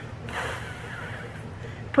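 A person blowing a steady stream of air through lips set in a trumpet embouchure, a breathy hiss with no lip buzz, lasting about a second and a half. It is the unbuzzed blowing that a trumpet teacher shows as the way to start a tone.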